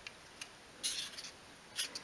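Faint, brief handling sounds of fingers rubbing on small glued pieces of strip wood: a light tick, then two short rustles, about a second in and again near the end.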